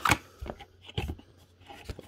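A cardboard graphics-card retail box being opened by hand: a few sharp knocks and scrapes of card, the loudest at the very start and another just before the end.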